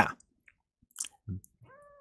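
Close-miked mouth noises in a pause between spoken phrases: the tail of a word, a couple of soft lip smacks or tongue clicks, then a faint voiced sound as speech resumes.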